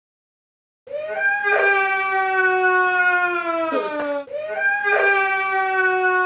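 A woman wailing in two long, drawn-out cries, starting about a second in, each lasting about three and a half seconds and sagging slowly in pitch.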